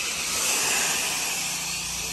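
Pressure washer spray wand putting a heavy coat of cleaning solution onto house siding, drawn through a 2.1 downstream injector on an 8 gallon-per-minute machine: a steady, loud hiss of spray.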